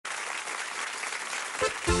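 Audience applauding. About one and a half seconds in, the band's instruments come in with a low bass line as the song starts.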